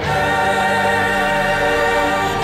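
Soundtrack music: a choir singing held chords.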